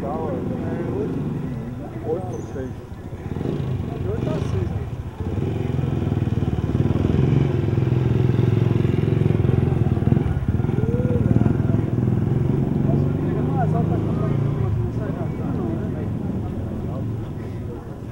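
Street ambience: indistinct voices over the first few seconds, then a motor vehicle's engine comes in at about five seconds, is loudest in the middle and fades away near the end.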